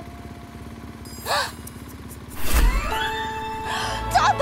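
Cartoon sound effects over a quiet music bed: a short pitched blip that bends up and down about a second in, a low thud about two and a half seconds in, then a rising glide into a held musical tone.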